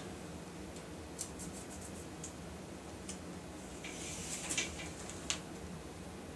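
Faint scattered clicks and a short scratching from a shower-door wall jamb being held and shifted against tile while hole positions are marked through it.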